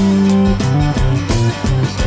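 Instrumental passage of a 1970 folk-rock song, no singing: guitar over held low notes that shift in pitch, with a steady beat of drum hits.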